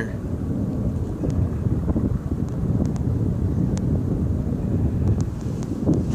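Wind buffeting a phone microphone: a steady low rumble, with a few faint ticks over it.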